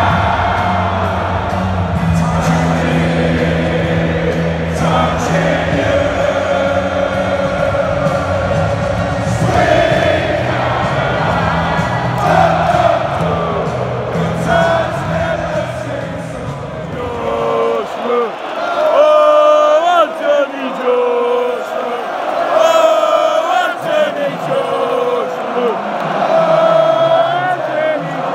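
Music played loud over a stadium PA, with a heavy bass line and a huge crowd singing along. About two-thirds of the way through the bass drops out, leaving mostly singing voices.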